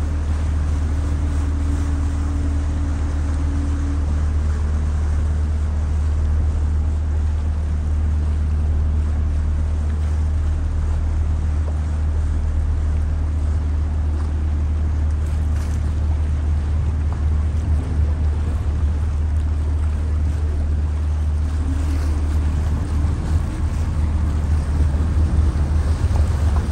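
Passenger motor ship's engine running with a steady low rumble, under the wash of water along the hull and wind on the microphone, which gusts more in the last few seconds.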